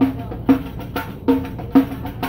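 A Luen hand drum with a white head, struck by hand in a short uneven beat of about five strokes, each a brief pitched hit.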